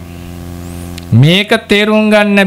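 Steady electrical mains hum from the microphone's sound system during a pause in speech; about a second in, a man's voice comes back in with a long drawn-out vowel.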